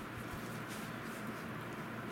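Quiet room tone: a steady low hiss with no distinct sounds, apart from a faint low bump shortly after the start.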